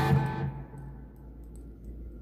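EVH Wolfgang Standard electric guitar, through an amp and monitors, ringing out a final picked chord that is cut off about half a second in. A low steady hum is left after it.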